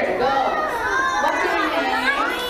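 A group of children chattering all at once, many high voices overlapping.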